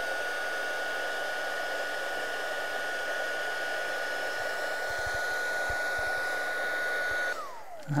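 Wagner electric heat gun running steadily, a rushing stream of air with a constant high whine from its fan motor. Near the end it is switched off and the whine falls away as the motor spins down.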